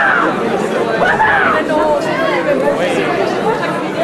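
A man's loud, animated voice, speaking or vocalizing with sweeping rises and falls in pitch.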